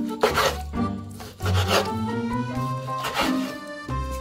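A chef's knife slicing through raw chicken breast onto a wooden cutting board, three slicing strokes about a second and a half apart, over background music.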